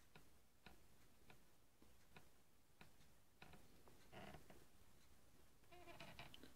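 Near silence in a small room, with faint, regular ticks a little over half a second apart.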